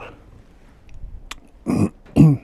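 The tail of mouth-driven air through a brass LPG filler non-return valve, cutting off at the start; the valve passes air because its spring holds the ball bearing off its seat, so it does not seal. Then a few light clicks of the brass fitting being handled, and a short vocal sound near the end.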